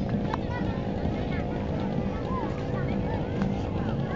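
Busy outdoor crowd: many overlapping voices and calls at once, with no single clear speaker, over a steady low rumble.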